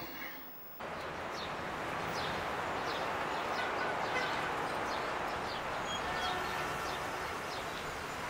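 Outdoor ambience that starts abruptly about a second in: a steady background hum with many short, quick bird chirps scattered over it.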